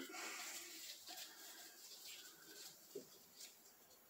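Near silence with faint small handling noises: gloved hands working the rubber dust boot off a tractor brake cylinder, with a brief faint sound about three seconds in.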